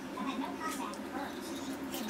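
A young girl's voice, high-pitched and wavering, with no clear words.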